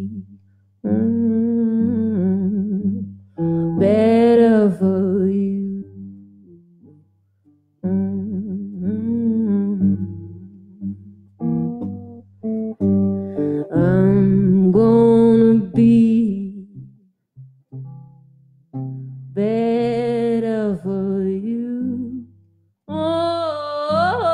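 A woman singing long held notes with vibrato to her own electric archtop guitar. The voice drops out briefly twice, leaving the guitar playing alone.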